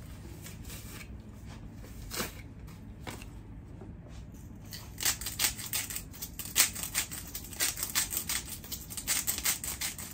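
A block of mozzarella cheese rubbed on a small hand grater: a few scattered scrapes at first, then from about halfway a quick, even run of rasping strokes, about three a second.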